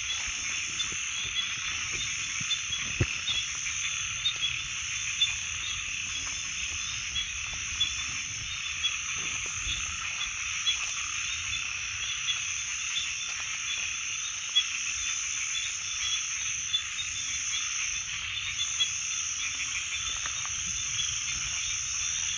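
Night chorus of many frogs calling together without a break, a dense mass of high, rapidly repeated calls, with a few brief clicks scattered through it.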